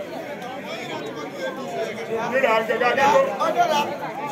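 Several people talking at once in overlapping chatter. A nearer voice grows louder from about two seconds in.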